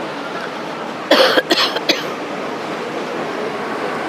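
A person coughing, a short burst of three or four quick coughs about a second in, over a steady background hiss.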